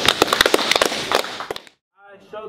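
A small group of people clapping hands in applause, fast and uneven. The clapping thins and fades out about a second and a half in, then the sound cuts off to silence.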